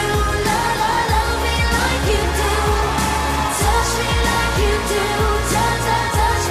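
Pop song with singing over a steady beat and heavy bass.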